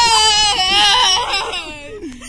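A person's high-pitched, drawn-out wailing cry, sliding slowly down in pitch and fading near the end, with another voice underneath. It is a cry of fright at the jolts of a bumpy ride.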